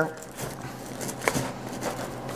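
A 20-round .308 rifle magazine being shoved into a fabric chest-rig pouch that already holds one: faint rustling and scraping of the pouch fabric, with a single sharp click a little over a second in.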